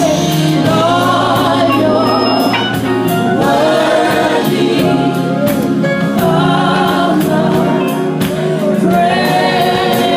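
Live gospel music: voices singing over a band, with a steady beat running through it.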